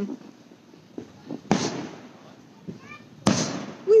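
Aerial fireworks shells bursting overhead: two main booms, one about a second and a half in and a sharper one a little after three seconds, each with a short echoing tail, and a few faint pops between them.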